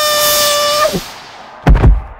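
Cartoon sound effects for a fall: a long, held high tone that breaks off just under a second in, then a heavy crash of impact near the end, the loudest sound here.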